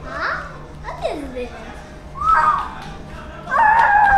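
Young children shrieking and calling out excitedly at play, in short rising and falling squeals, then a louder, longer held cry near the end.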